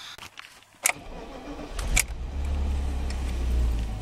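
BMW 324d's M21 inline-six diesel engine being started: a click a little under a second in, a second click about two seconds in as it catches, then a steady low idle.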